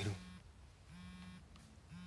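Smartphone vibrating with an incoming call, a low buzz pulsing on and off three times, about once a second.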